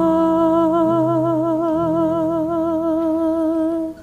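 Hymn singing: a singer holds one long note with a steady vibrato over keyboard chords, whose bass notes change twice beneath it. The voice cuts off abruptly just before the end.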